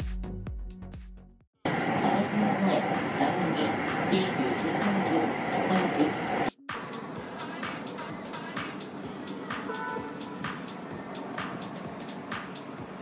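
Electronic dance music fades out, then a moving train is heard from inside for about five seconds: a dense running noise with indistinct voices. The sound cuts off suddenly and gives way to quieter outdoor ambience with faint regular ticks.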